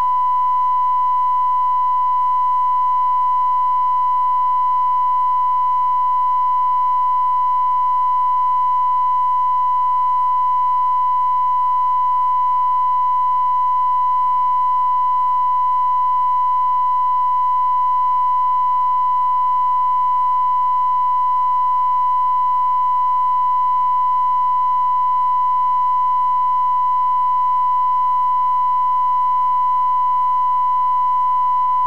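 BBC1's post-closedown line-up tone: a steady, unbroken 1 kHz tone over a black screen, the sign that the channel has closed for the night while its transmitter is still on air.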